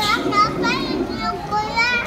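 High-pitched children's voices, wordless calls and squeals that rise and fall, as of kids playing, heard over the hum of a busy dining room.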